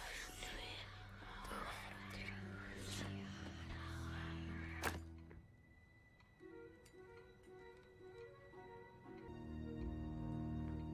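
Eerie score with sustained low drone tones under layered, breathy whispering for about five seconds, ending with a single sharp thunk. Then quieter, held musical tones.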